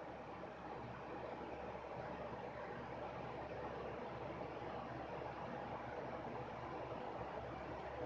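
Steady faint hiss of room noise, with no distinct events.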